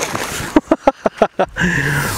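Hooked bream splashing and thrashing at the water's surface: a quick run of about six sharp splashes, then a man's voice near the end.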